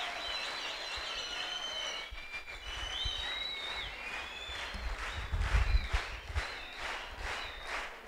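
An audience applauding in a large hall, with several high, held tones, like calls or whistles from the crowd, over the clapping in the first half.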